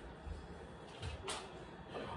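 A few faint soft knocks and handling sounds of a floor air pump being put away, over quiet room tone.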